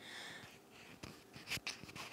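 Faint handling noise: fingers turning the RØDE Wireless Go transmitter, heard through its own built-in omnidirectional condenser capsule, with a breath near the start and a few soft clicks in the second half.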